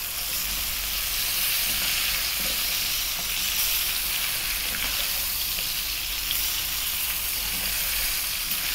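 Chicken strips, onion and bell pepper frying in sunflower oil in a wok over high heat: a steady sizzle while a slotted spoon stirs and turns them, with a few faint scrapes.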